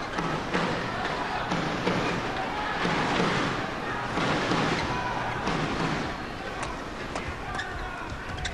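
Arena crowd cheering in a steady rhythm, about twice a second, with a few sharp clicks near the end.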